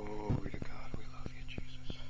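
A faint voice, close to a whisper, briefly at the start and then softer, over a steady mains hum and scattered small clicks in the recording.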